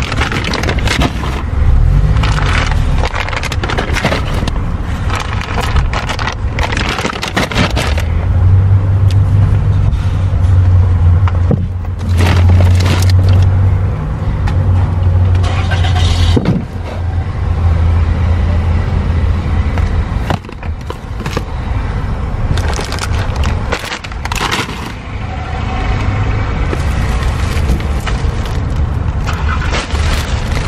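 Grocery items being set down and shifted in a car's cargo area: repeated knocks and scraping over a steady low rumble.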